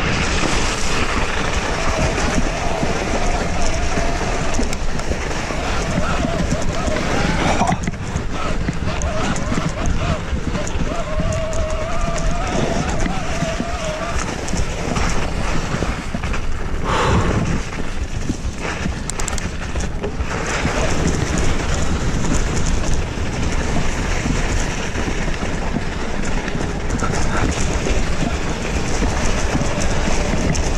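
Electric mountain bike riding a snowy singletrail: a continuous loud rush of wind on the camera microphone mixed with tyre noise and the rattle of the bike over the rough trail. A faint wavering whine comes in twice.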